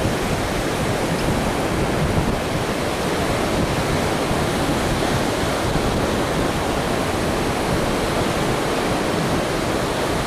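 Steady, unbroken noise of ocean surf mixed with wind on the microphone.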